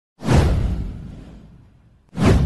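Whoosh sound effect of an animated intro: one sudden swoosh with a deep low rumble, starting a quarter second in and fading away over about a second and a half.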